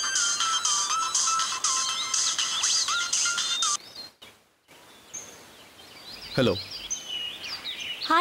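A mobile phone ringtone, a pulsing electronic tune, plays and cuts off suddenly about four seconds in. After that, birds chirp faintly and a voice is briefly heard.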